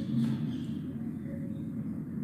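Low, steady background hum and room noise, with no distinct event.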